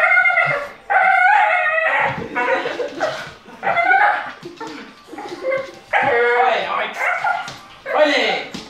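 Bull terrier making a weird noise while tugging on a leash in play: a string of short, high-pitched calls that bend up and down in pitch.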